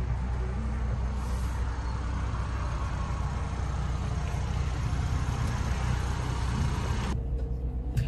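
Steady low rumble with hiss inside a 2023 Ford Bronco's cabin, the sound of the vehicle idling. The hiss drops away near the end, leaving the low rumble.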